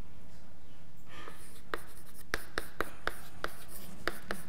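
Chalk writing on a blackboard. After a quiet first second comes a soft scratch, then a quick run of sharp taps and short strokes, about four a second.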